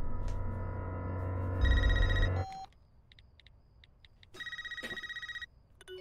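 Telephone ringing with an electronic trilling ring, twice: the first ring over a low drone that cuts off about two and a half seconds in, then a short silence before the second, shorter ring.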